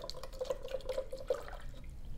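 Soil and purified water being stirred together in a plastic measuring pitcher: wet sloshing with a quick run of small clicks against the pitcher.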